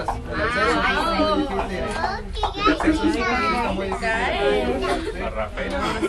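Several high-pitched voices, children's among them, chattering over one another, over a steady low hum and rumble.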